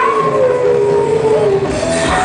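DJ mix in which the bass and beat drop out while a long, howl-like pitched tone slides steadily downward over nearly two seconds.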